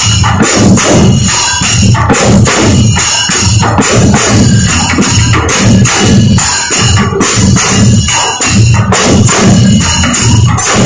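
Several large double-headed barrel drums beaten with sticks, playing together in a steady, driving rhythm of deep strokes about twice a second.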